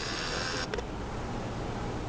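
A camcorder's zoom motor whirring as the lens zooms out, then stopping abruptly with a click under a second in. A low steady hum continues underneath.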